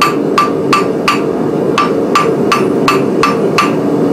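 Hand hammer striking a faggot weld of stacked steel bars at welding heat on the anvil, about three blows a second with a brief pause partway through, each blow followed by a short ring, over a steady low hum. These are the heavier blows that come after the light initial welding blows, consolidating the weld.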